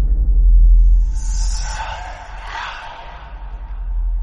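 A deep rumbling sound effect that swells in the first second and then slowly fades, with a hissing whoosh over it from about one to three seconds in.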